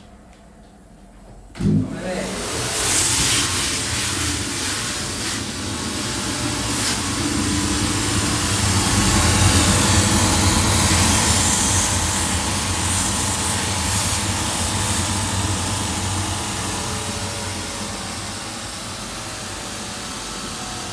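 Hardo shoe finishing machine switched on with a click about a second and a half in, its motor and abrasive wheels then running steadily. A sole piece is sanded against a wheel, loudest in the middle, shaping it to sit flush on the shoe.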